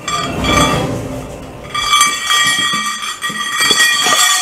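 Metallic clinking and ringing: several high tones ring out briefly at the start, then sound again and ring on steadily from just under two seconds in.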